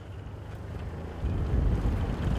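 Wind buffeting the microphone on a small fishing boat at sea, over a hiss of wind and water, with a low rumble that swells about a second in.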